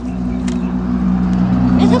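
A motor running steadily nearby, a low drone that holds one pitch and sits under the voices.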